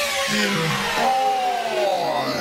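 Hardcore dance music in a breakdown or transition: a noisy synth sweep and several tones glide downward in pitch, with no kick drum.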